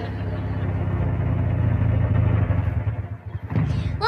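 Low, rumbling motor-vehicle engine sound effect that dies down about three seconds in.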